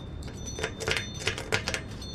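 Irregular light metallic clicks and ticks, about four or five a second, from a lock pick and tension tool working inside the lock of a motorcycle's chrome locking fuel cap while it is being picked.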